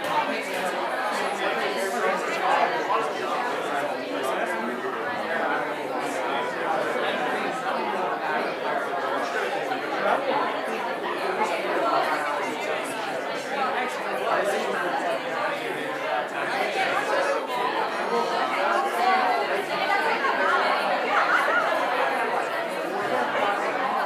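Congregation chatting: many overlapping conversations at once, a steady hubbub of voices with no one voice standing out.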